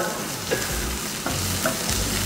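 Diced carrots and onions sizzling in hot oil in a stainless steel frying pan, stirred with a slotted spatula that scrapes and taps the pan a couple of times.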